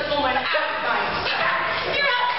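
Young voices giving short, high-pitched yelps and cries rather than words, one sliding sharply down in pitch about half a second in.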